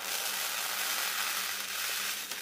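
Gold sugar beads pouring from a clear plastic packet into a round bead dish: a steady, hissing rattle of many tiny beads landing.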